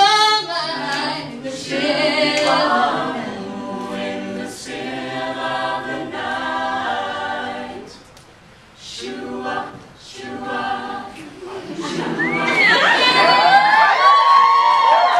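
Mixed male and female a cappella group singing a doo-wop ballad in close harmony, with no instruments. The voices break off briefly about eight seconds in, then come back and build to louder, higher sliding notes near the end.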